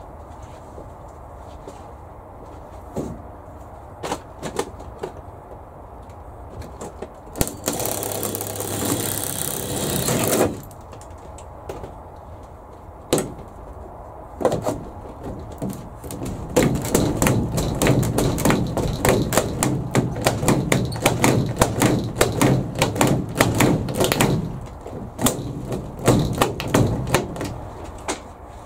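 A drill runs for about three seconds, boring a hole in the greenhouse frame for a pop rivet. Later comes a long run of rapid, irregular clicking and rattling from work on the frame as the rivet is fitted.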